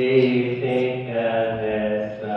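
A man's voice through a microphone, slow and drawn-out, with long held sounds.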